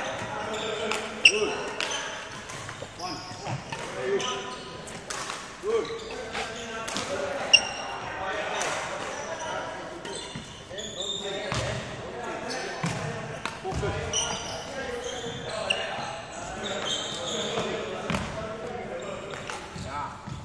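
Badminton practice on an indoor wooden court: irregular sharp racket hits on shuttlecocks, footsteps and sneaker squeaks, echoing in a large hall.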